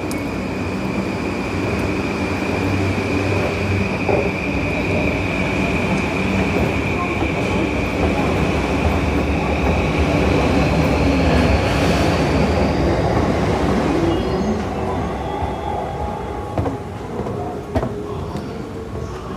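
Electric commuter train running along the station platform tracks: a rumble with a steady high whine and a rising higher tone, growing louder for about twelve seconds and then fading away.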